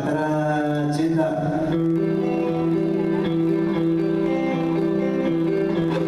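Live band with electric guitar playing during a stage sound check: a short run of notes, then long held notes.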